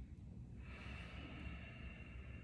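A person breathing out in one long hissing exhale, starting about half a second in, over a steady low hum of the room.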